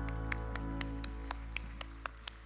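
A worship band's final chord ringing out and slowly fading, with hand clapping at an even pace of about four claps a second over it.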